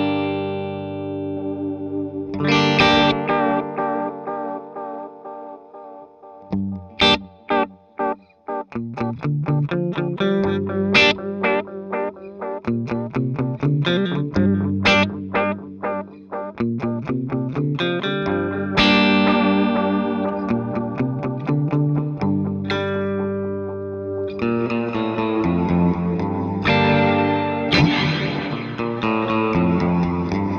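Les Paul-style electric guitar played through a Keeley Caverns V2 pedal, with its tape-style delay and its modulated reverb set to long decay. Two ringing chords fade out slowly over the first six seconds, then quickly picked single notes and strummed chords follow, each trailing into echoes and a long, sweeping reverb wash.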